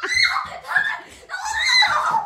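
A person shrieking: three high-pitched shrieks in a row, the last the longest and loudest.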